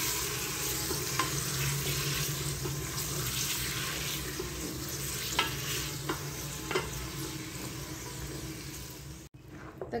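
Beef pieces sizzling as they are browned with fried onions in an aluminium pressure cooker pot, stirred with a wooden spatula that scrapes and knocks against the pot a few times. The sizzling stops suddenly near the end.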